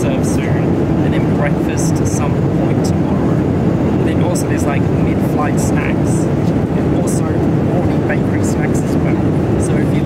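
Steady low rumble of cabin noise in a Boeing 787-9 airliner in flight: engine and airflow noise heard from a seat inside the cabin.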